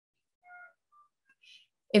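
A pause between spoken sentences, near silent but for a few faint, short whistle-like tones about half a second and a second in, and a faint hiss just before a woman's voice starts again at the very end.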